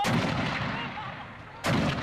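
Two mortar rounds fired about a second and a half apart, each a sudden loud blast that dies away over the next second.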